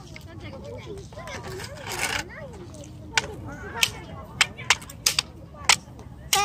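Soft, indistinct voices, then from about three seconds in a run of sharp, irregular clicks or taps, about eight of them.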